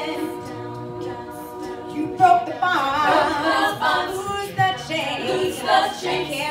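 A cappella vocal group singing in harmony without instruments: a soft held chord for about the first two seconds, then a lead voice over the backing voices comes in louder.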